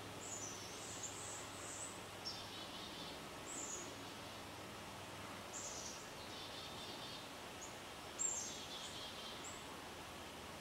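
Small birds calling with short, high, thin chirps that slide downward in pitch, repeated irregularly over a steady outdoor background hiss. The loudest chirp comes about eight seconds in.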